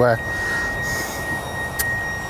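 An alarm sounding one steady, high-pitched tone without a break, over outdoor background noise, with a single short click near the end.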